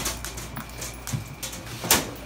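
Knocks, clicks and rustles of hard plastic containers and cardboard being bumped and moved about, ending in one sharp, loud knock just before the end.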